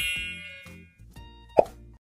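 End-card sound effects over soft background music: a bright chime rings out and fades over the first second, then a short pop sounds about one and a half seconds in.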